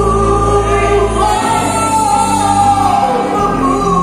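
Live band playing a song: a singer's long held notes over electric and acoustic guitars and bass.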